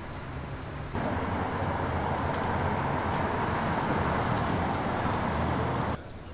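City street traffic noise, a steady wash of vehicles on the road. It jumps suddenly louder about a second in and stays level until it cuts off at the end.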